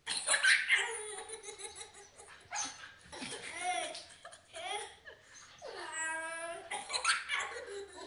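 A young child and a woman laughing hard in repeated bursts, starting suddenly; about six seconds in one laugh is drawn out into a longer held note.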